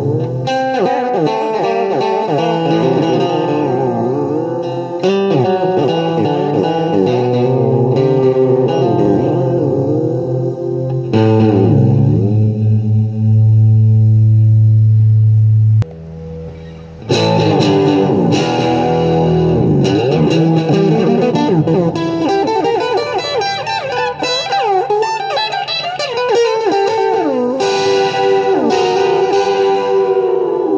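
Electric guitar played through a Clari(not)-style fuzz pedal, its notes wavering and bending in pitch. A loud low note is held from about eleven seconds in and cuts off sharply about five seconds later, before the warbling playing resumes.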